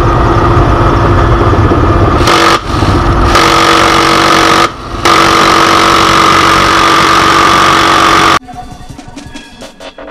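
M134D-H Minigun (7.62 mm rotary machine gun) firing long bursts from a helicopter door, a dense continuous buzz with a steady whine. It breaks off briefly about two and a half and five seconds in, then stops abruptly about eight and a half seconds in, leaving a much quieter sound.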